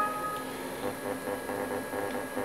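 Quiet workshop room tone with a faint steady high-pitched whine. A short clear tone at the start stops about half a second in.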